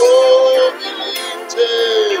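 A man singing a praise and worship song with musical accompaniment. He holds one long note that breaks off suddenly, then starts a second held note that falls at its end.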